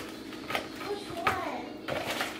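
Plastic zip-top bags rustling as they are handled and pushed into a plastic bag organizer, with a few light knocks, and a faint voice briefly in the background.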